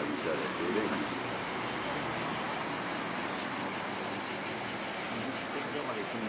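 Chorus of cicadas buzzing steadily, a high pulsing drone.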